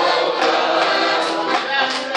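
A group of men and women singing a folk song together, accompanied by an accordion.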